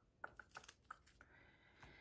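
Faint, irregular light clicks and taps, about half a dozen, as a paper sticker book is handled and metal tweezers pick at a sticker sheet.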